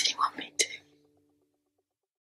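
A person whispering a short phrase over the faint last notes of the soundtrack music, which fade out. The second half is silent.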